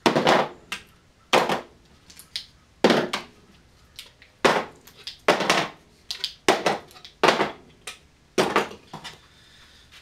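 Plastic spring clamps being pulled one by one off a fiberglass fuselage mold and set down on a table: a string of about ten sharp clacks and clatters at irregular intervals.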